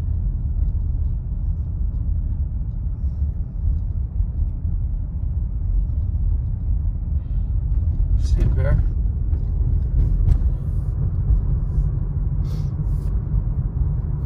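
Steady low rumble of a car's engine and tyres on wet pavement heard from inside the cabin while driving, with a few faint clicks late on.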